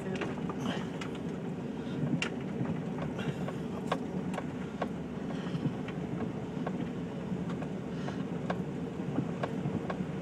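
Vehicle driving slowly through a muddy, rutted dirt road, heard from inside the cab: a steady engine and tyre drone with scattered sharp clicks and knocks.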